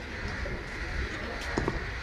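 A bird cooing, over steady outdoor background noise, with a few short calls about one and a half seconds in.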